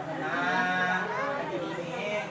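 A voice chanting the blessing of a Lao baci (sou khuan) ceremony, one long drawn-out tone in the first second or so, then broken phrases with other voices.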